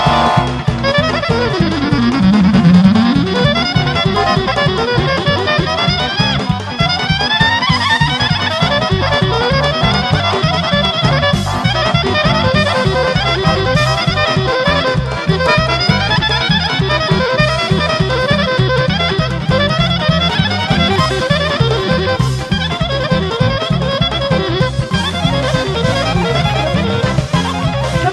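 Bulgarian folk orchestra playing a fast instrumental piece: quick, ornamented melody runs over a steady drum beat.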